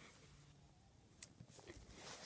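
Near silence: faint room tone, with one faint click a little over a second in.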